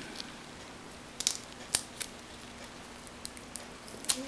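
Faint, sharp clicks, about five spread over a few seconds, the clearest a little under two seconds in, as a small blade is handled and fitted at the tip of a carving-knife handle.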